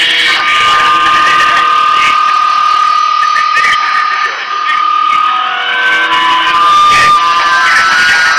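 Loud experimental noise music: several long held tones over a dense hiss, with brief clicks about two seconds in and near the end.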